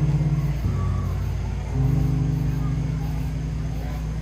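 Electronic keyboard playing the instrumental introduction of a song: held chords with a low bass note, changing chord about half a second in and again just before two seconds in.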